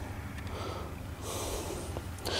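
A man's breath close to the microphone: a soft, noisy breath through the nose that swells about a second in.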